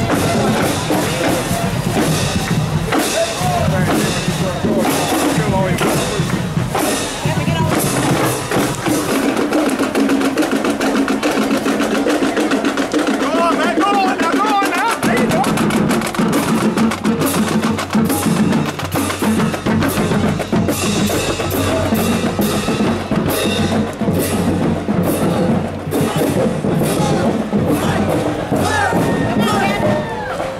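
Marching band drumline, snare and bass drums playing a steady drum cadence with closely spaced strikes.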